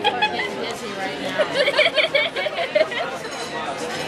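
Indistinct conversation and chatter around a restaurant table, with no clear words standing out.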